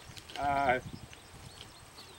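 Speech only: a man's voice speaks one short word or filler about half a second in, then a quiet pause.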